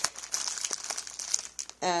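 Clear plastic packaging around packs of note cards crinkling and crackling as it is handled, a rapid run of small crackles that eases off near the end.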